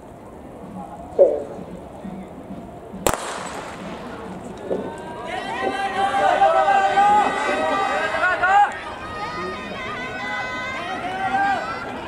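Starting pistol fired for a 400 m hurdles race about three seconds in, a single sharp crack with a short echo. From about five seconds on, spectators shout and cheer the runners on, many voices overlapping.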